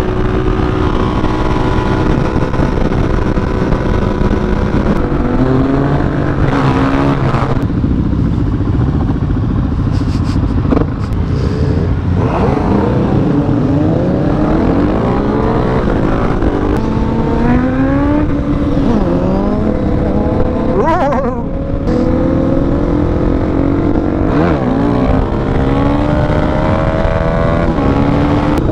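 Suzuki DRZ400SM single-cylinder motorcycle engine under way, holding a steady note at first and then revving up and down repeatedly through the gears, with one sharp rev a little past the middle. Other motorcycles ride alongside.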